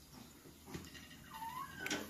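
A faint, short cat meow that rises in pitch about a second and a half in, over quiet room hum.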